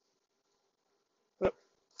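Near silence, then about one and a half seconds in a single short, sharp voice: a student calling out an answer.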